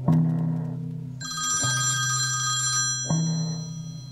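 A smartphone ringing: a high-pitched electronic ring from about a second in, lasting about a second and a half. Under it runs a slow music score, with a deep note struck about every second and a half.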